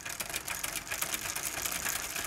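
A dense, rapid clicking and crackling sound effect at a steady level, accompanying an animated intro in which lines are drawn between grid dots.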